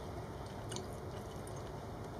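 A person quietly chewing a mouthful of canned tuna, with a couple of faint small clicks.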